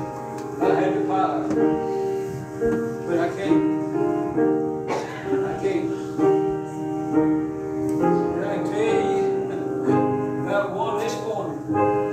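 Piano playing a hymn in slow, held chords.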